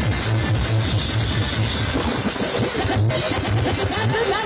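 Electronic dance music played through a large sound-system speaker stack, with a heavy bass beat pulsing at a steady rhythm.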